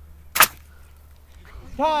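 Two-liter soda-bottle water rocket blasting off its launcher under air pressure: one short, sharp burst of escaping air and water about half a second in.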